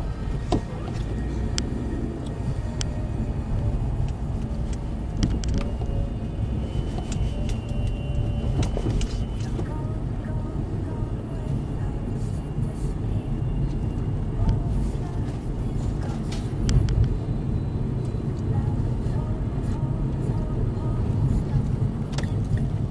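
Road and engine noise of a moving car picked up inside the cabin by a windshield dashcam: a steady low rumble with scattered small clicks and rattles. A thin high tone comes in about a quarter of the way through and lasts a few seconds.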